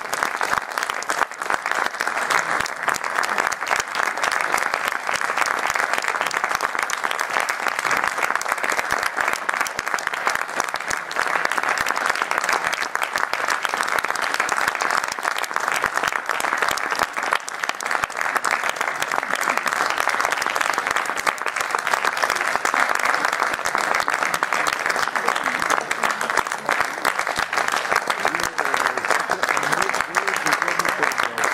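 Audience applause, a dense, steady clapping that keeps up without letting up.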